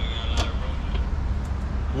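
A steady low rumble with a single short click about half a second in.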